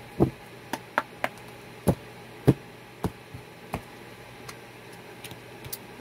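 A tarot deck being shuffled by hand: a string of irregular, sharp card taps and slaps, about a dozen, coming less often toward the end.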